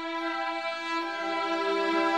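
Orchestra playing a slow, sustained passage with violins to the fore: a long held note, joined about halfway through by a lower string line.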